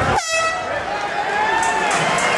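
A short air-horn blast about a quarter second in, the signal that ends the round, over crowd voices and chatter.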